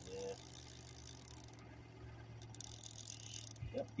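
Fishing reel being cranked to bring in the line, a faint mechanical rattle of clicks over a steady low hum.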